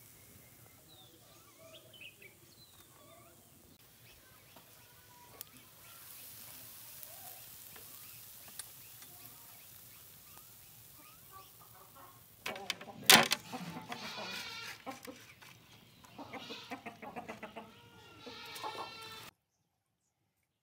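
Fish sizzling faintly on a wire grill over charcoal, with small ticks. From about twelve seconds in come louder animal calls and one sharp knock. The sound cuts off suddenly near the end.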